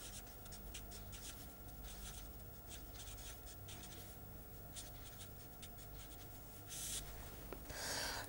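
Faint scratching of a felt-tip pen writing on paper: a run of short strokes, with a longer stroke near the end.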